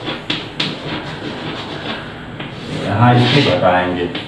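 Chalk writing on a chalkboard: a few sharp taps and scratchy strokes as digits are written. A man's voice is heard briefly about three seconds in.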